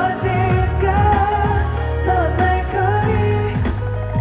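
A male singer performing a pop song with a sustained melodic vocal line over a band track of steady bass, acoustic guitar and drums.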